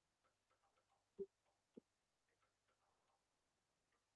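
Near silence with faint small ticks and taps: a stylus tapping on a tablet's glass screen while writing. Two taps about a second in and shortly after stand out from the rest.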